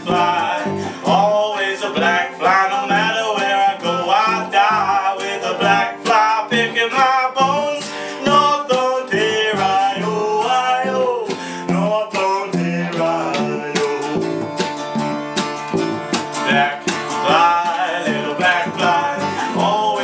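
Folk song played on two strummed acoustic guitars, with a wavering melody line carried over the chords in a passage with no lyrics.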